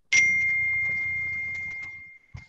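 A single ding: one clear ringing tone that starts suddenly and fades away over about two seconds.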